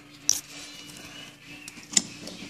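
Two sharp clicks about a second and a half apart, over a faint steady hum.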